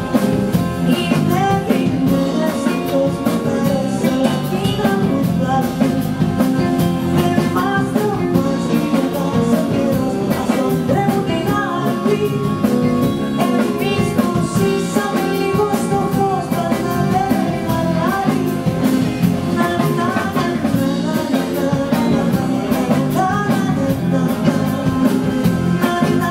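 Live band playing an upbeat song: a woman singing at the microphone over accordion, electric guitar, bass and a drum kit keeping a steady beat.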